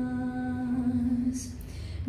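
A woman's voice holding one long, steady hummed note that fades out about a second and a half in, between sung phrases of a song.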